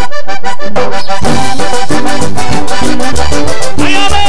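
Vallenato music led by a button accordion: rapid short repeated accordion chords, with the rest of the band, bass and percussion, coming in about a second in.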